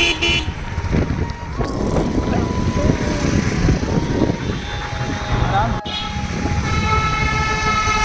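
Road traffic with motorbikes and auto-rickshaws, and a short horn beep at the start. About seven seconds in, a long steady vehicle horn begins and holds.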